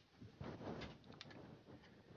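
Faint handling noise: a few light clicks and rustles as a cordless soldering iron is moved and repositioned in the hand.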